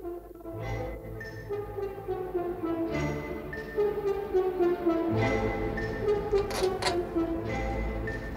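Dramatic orchestral film score with brass over heavy low beats every two seconds or so.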